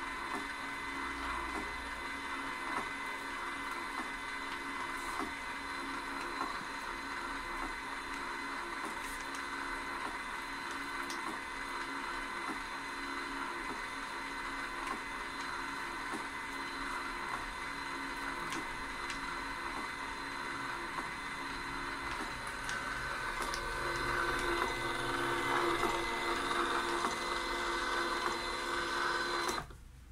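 Zebra GK420d direct thermal label printer running continuously as it feeds out a strip of labels: a steady, several-toned whine from its paper-feed motor with faint ticking, louder near the end.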